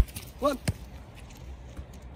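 Two thuds of a football being struck: a sharp, loud one at the start and a lighter one less than a second later, as the ball meets hands, boot or grass in a goalkeeper catching drill.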